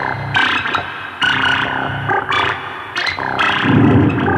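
Moog Matriarch analog synthesizer playing a repeating sequence of pitched notes with sharp attacks, the phrase coming round about every second and a half. A low, loud swell builds near the end.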